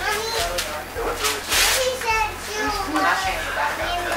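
Children's high-pitched voices and playful chatter during play, with a brief noisy burst about one and a half seconds in.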